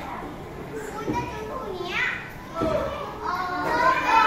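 Children's voices and chatter in a classroom, with several short calls, growing louder near the end.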